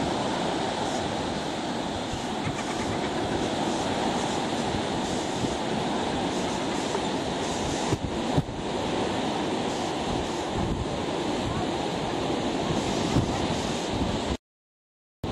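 Wind buffeting the microphone over the steady wash of surf on a shingle beach. The sound briefly breaks about eight seconds in.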